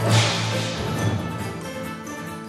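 Orchestral show music punctuated right at the start by a sudden loud crash-like hit with a deep thump, its bright high ring fading away over about a second while the music carries on.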